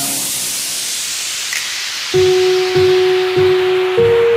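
Electronic dance music at a breakdown: the drums and bass drop out, leaving a falling white-noise sweep. About halfway through, a held synth note comes in over low pulses roughly every 0.6 seconds.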